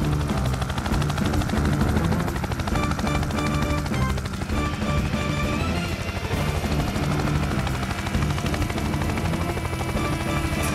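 Helicopter rotor chopping rapidly and steadily, a cartoon sound effect, under background music.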